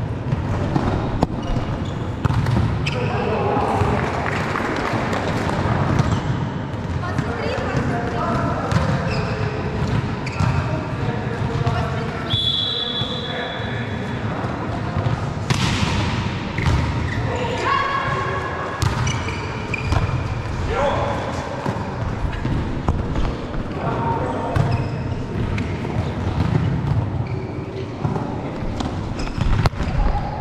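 Volleyball rally in a large indoor hall: the ball is struck again and again with sharp smacks, the sharpest about halfway through, while players shout and call to one another.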